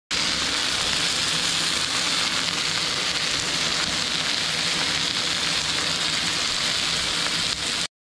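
A thick bone-in beef rib steak (côte de bœuf) sizzling steadily in a hot skillet. The sound stops abruptly near the end.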